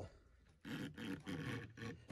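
A hard disc scraped in about four short strokes across a hardener-catalysed Envirolak lacquer coating on a cabinet door, starting about half a second in. It is just beginning to mar the surface with a little scraping.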